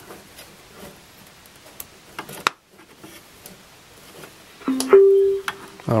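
A CT14 Bluetooth amplifier module's power-up tone played through its speakers as the micro USB power is connected: a short low beep, then a higher beep held for about half a second and fading, about five seconds in. Before it come a few small clicks from the plug being handled and pushed in.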